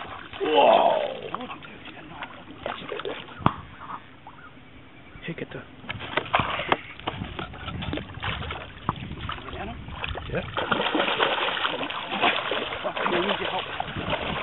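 A hooked fish, a big salmon or giant trout, thrashing and splashing at the water's surface beside a boat, the splashing coming thicker and louder over the last few seconds. A short loud voice about half a second in.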